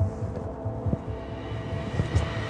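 Background music score: held tense tones over a pulsing low beat. A single short click sounds about a second in.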